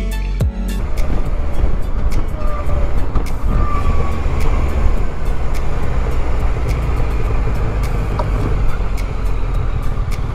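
Background music ends about a second in, giving way to the ride sound of a Yamaha Tracer 900 GT motorcycle: its three-cylinder engine running at low road speed, with a steady low rumble of wind and road noise.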